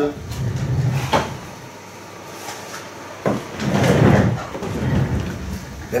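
Handling noise of a boxed doll set, a cardboard box with a plastic window, being picked up and moved: a sharp knock about a second in, then louder bumping and scraping of the packaging from about three seconds in.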